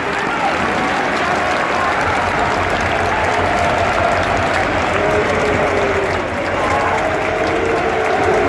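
Football crowd in a stadium stand applauding, with voices calling out among the clapping.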